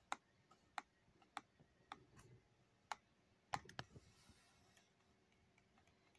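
Near silence broken by about seven faint, sharp clicks at uneven intervals, clustered in the first four seconds.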